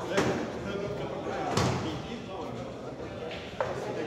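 Three sharp knocks in a pool hall: one about a quarter second in, a heavier thud about a second and a half in, and a lighter knock near the end, over background voices.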